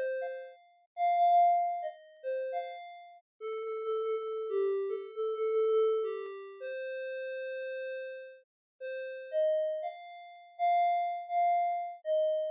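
Electronic piano notes from a browser-based augmented-reality piano app, triggered by gloved fingertips tapping a table, playing a slow melody one note at a time. Each note starts cleanly and fades away, with one longer held lower note around the middle.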